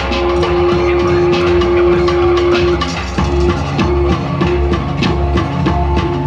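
Electronic hip hop beat played from laptops and controllers, with a steady deep bass and drum hits. A held synth note runs through the first half, then breaks into short, choppy repeated notes.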